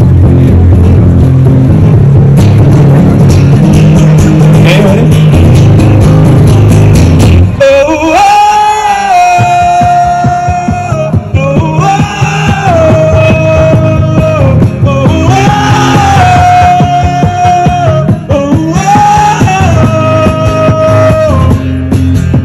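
A street busker sings with an acoustic guitar through a microphone and amplifier. About eight seconds in, he sings the hard passage of the song: four long high notes in a row, each opening with an upward slide and held for about two seconds.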